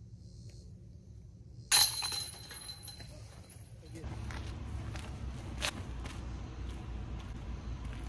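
A disc golf putt striking the metal basket: one sharp clank with a ringing metallic tone that dies away over about a second, followed by steady outdoor background noise.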